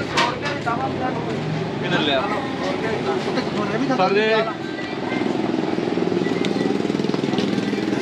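Short bits of men talking over a steady low hum that grows denser in the second half.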